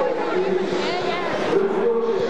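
Men's voices, several overlapping, talking and calling out with no clear words.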